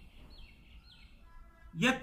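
A bird chirping faintly: three short falling notes in quick succession in the first second, followed by a brief faint tone. A man's voice resumes near the end.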